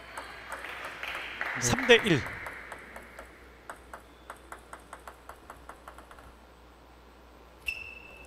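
A table tennis ball bounced repeatedly, about five light ticks a second for roughly four seconds, as a player readies a serve.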